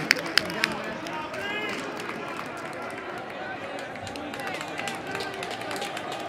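Players' voices shouting and calling across a football pitch, with a few sharp knocks of ball touches in the first half-second, in a stadium without a crowd.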